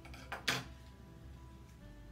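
A pair of scissors set down on a tabletop with a short clatter about half a second in, over soft background music.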